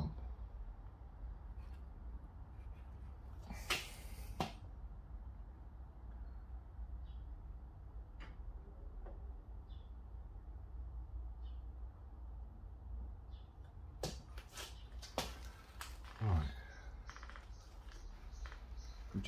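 Steady low hum with a few brief clicks and rustles of hand tools and parts being handled on the workbench, once about four seconds in and several more from about fourteen to sixteen seconds.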